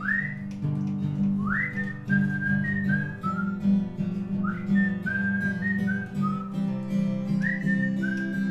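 A man whistling a melody over a strummed acoustic guitar. Each whistled phrase opens with an upward swoop, then steps down through a few held notes.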